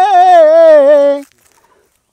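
An unaccompanied voice holding the long last note of a sung line; the note wavers, steps down in pitch and breaks off a little over a second in, leaving near silence.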